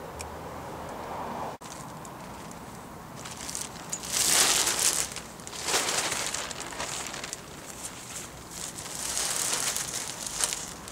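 Crinkling, rustling noise in several short bursts, about four and a half, six and nine seconds in, over a low steady background.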